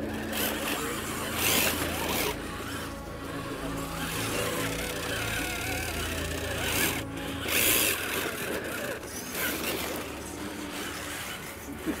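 Electric RC rock crawler climbing a steep rock face: its motor and gears whine under load while the tires scrabble on rock. Louder bursts of hissing noise come about a second and a half in and again around seven seconds.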